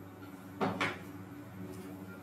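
Two quick knocks about a quarter of a second apart, a little past half a second in, over a steady low hum.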